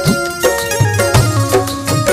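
An instrumental Hindi film-song tune played on an electronic keyboard and an Indian banjo (bulbul tarang), with a steady drum-machine beat underneath.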